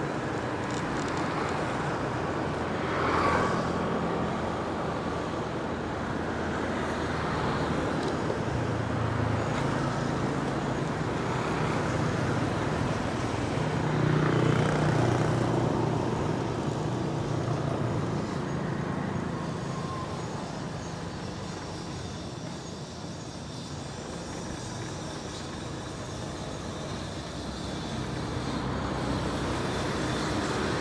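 Street traffic with motorbike engines running and tyres on the road, heard from a moving vehicle, with two louder swells, about three seconds in and midway, as vehicles pass close.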